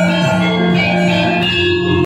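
Javanese gamelan ensemble playing, its bronze gongs and metallophones ringing in many sustained, overlapping tones.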